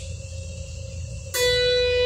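Electric guitar: a single picked note, B on the first string at the seventh fret, struck about a second and a half in and left ringing steadily, over a low steady hum.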